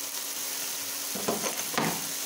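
Sliced sausage, tomatoes, bell pepper and onion sizzling steadily in a frying pan, with two short stirring scrapes in the second half.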